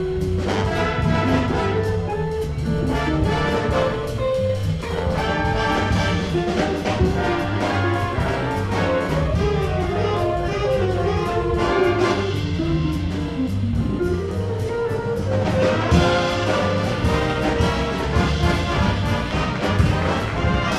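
Jazz big band playing a swing chart live: saxophones, trumpets and trombones over a rhythm section of drum kit, upright bass and electric guitar.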